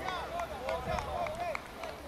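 Several voices from the soccer match calling out at once, overlapping and not clear enough to make out words, with a few faint scattered ticks among them.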